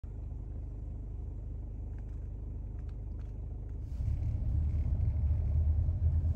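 Low, steady rumble of a car driving, heard from inside the cabin, growing louder about four seconds in, with a few faint ticks around the middle.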